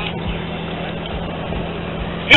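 A steady low mechanical hum, like an idling engine, over a constant wash of outdoor background noise.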